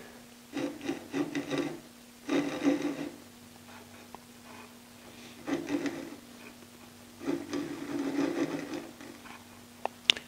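Spindle roughing gouge peeling shavings off a hard maple spindle with the lathe switched off, heard as four short bursts of dry scraping separated by pauses, over a faint steady hum.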